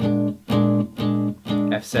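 Archtop jazz guitar, a 1977 Gibson L5, strumming a B-flat seventh chord four times on the beat, about two strums a second, each chord cut short before the next. These are the B-flat seven bars of a plain F jazz blues.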